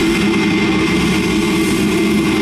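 Amplified distorted electric guitars and bass holding a loud, steady drone through the stage amps, a dense wall of noise with a constant low pitch.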